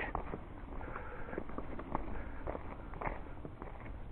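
A hiker's footsteps on a gravel trail running into grass: faint, irregular crunching steps over a steady low background noise.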